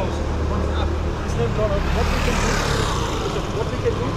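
Night street ambience: people talking nearby over a steady low traffic rumble, with a rushing swell, like a vehicle going past, about halfway through.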